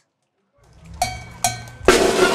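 Two sharp, ringing metallic percussion strikes over a rising background, then a band's drums and music come in loudly near the end.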